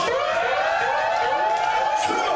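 Siren sound effect played by the DJ over the club sound system to hype the crowd. It is a rising wail, repeated several times with overlapping echoes, settling into a steady high tone.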